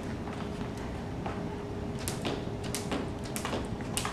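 A jump rope being turned and skipped on a hard floor, making sharp clicks from about halfway in, roughly one every two-thirds of a second.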